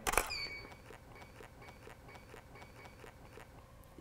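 A DSLR shutter click as the studio strobe fires, followed about a third of a second later by a short high electronic beep. Then only faint, evenly spaced ticking, about four a second.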